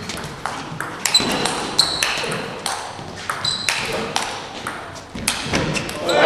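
Table tennis rally: a quick run of sharp hits, several a second, as the ball clicks off the rackets and pings on the table, some bounces leaving a short ringing tone.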